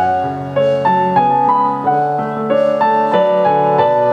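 Nord Electro 3 stage keyboard playing a solo instrumental passage: a stepping melody over sustained chords, with no voice.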